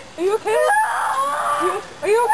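A high-pitched young voice giving a few short rising yelps, then one long drawn-out shriek from about a second in, during a running jump.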